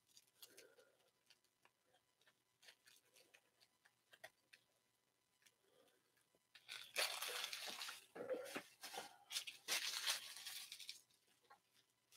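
Foil trading-card pack wrapper crinkling and tearing in irregular bursts from about seven seconds in until near the end, after a stretch of faint ticks of cards being handled.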